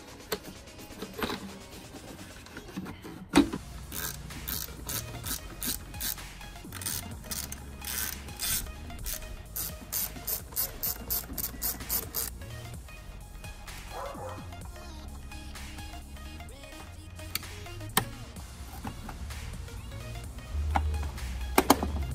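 Ratchet of a hand screwdriver clicking steadily, about three clicks a second for some eight seconds, as the Torx screws of a plastic air filter box lid are driven in. A single loud knock comes just before the clicking starts.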